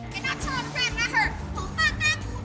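Music with a high-pitched, child-like voice over it, short bending vocal phrases repeating over a steady low backing.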